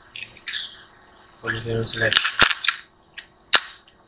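Three sharp clicks at the computer, two close together a little past halfway and one near the end, the loudest sounds here, with short snatches of speech around them.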